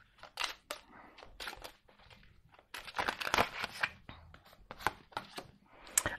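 A deck of tarot cards shuffled and handled: irregular papery sliding and flicking of cards, loudest about halfway through. Near the end one card is laid down on the wooden table.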